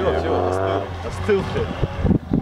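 People's voices talking and calling out over the steady low drone of a distant off-road car's engine.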